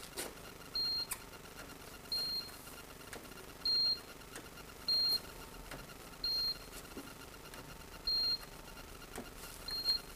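Handheld paint thickness gauge beeping seven times, one short high beep every second or so, each beep marking a reading as it is pressed against the car's door and sill. It is checking the bodywork for filler, which reads about a thousand microns thick on the door.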